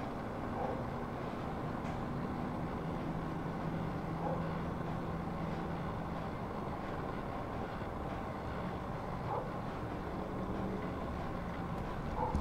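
Steady low background rumble with a faint hum, and a few faint soft clicks over it.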